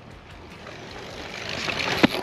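A small BMX bike's tyres rolling fast on a concrete skatepark bowl, the rolling noise growing steadily louder as the bike approaches.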